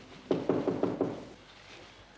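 Knocking on a door: about five quick raps in under a second.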